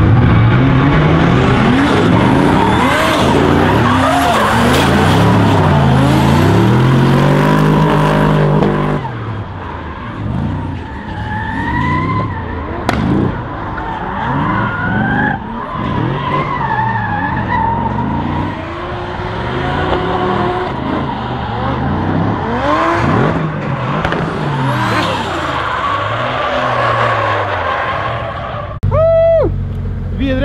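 Two drift cars' engines revving hard, rising and falling in pitch over and over, with tyres skidding through a tandem drift run. About nine seconds in the sound drops and becomes more distant, with the same rev swings and higher tyre squeals carrying on.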